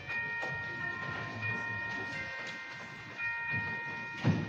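Organ playing slow, held chords in a church, the notes sustained for a second or two and changing one at a time.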